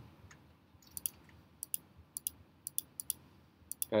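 Computer mouse clicking: about a dozen light, sharp clicks, mostly in quick pairs, as a drawing element is edited in CAD software.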